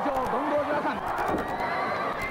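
A man's voice calling out in a drawn-out, wavering pitch, over steady background noise.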